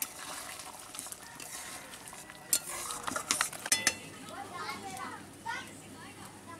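A metal spatula stirring and scraping through a thin curry in a metal kadai, with a cluster of sharp clinks of spatula on pan about two and a half to four seconds in.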